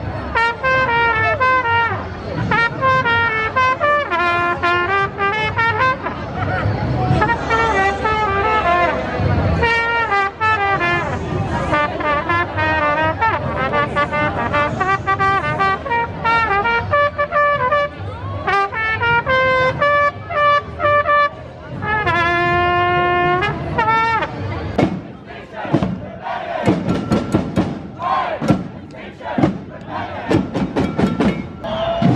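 Brass instruments playing a tune in held, stepping notes over crowd noise. About five seconds before the end the brass gives way to sharp, rapid drum beats.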